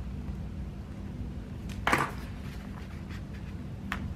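A label sticker peeled off its paper backing sheet: one short papery rasp about two seconds in and a small click near the end, over a steady low hum.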